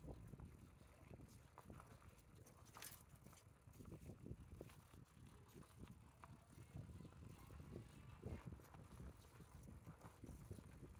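Faint, uneven clopping of a horse's hooves walking on a dirt road.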